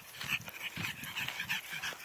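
A pug breathing audibly close to the microphone, in irregular short breaths.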